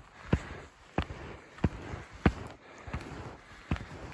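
Steps on skis through deep snow: a short crunching stroke about every two-thirds of a second, some six in all.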